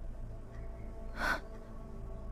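A woman's single sharp, tearful intake of breath a little over a second in, over faint background music.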